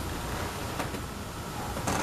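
Steady background hiss with two faint light taps, from hands handling a large cardboard product box.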